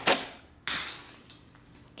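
Capsule coffee machine being loaded: a sharp click as the pod drops into the holder, then about half a second later a second clack with a short rattling tail as the head is closed over it.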